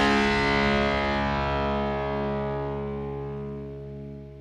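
The last distorted electric guitar chord of a punk rock song, held and ringing out after the final drum hits, fading steadily with a slow wavering in its notes.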